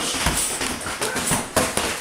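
Boxing gloves landing and feet shuffling and stamping on the ring canvas during sparring: a quick, irregular series of thuds and slaps.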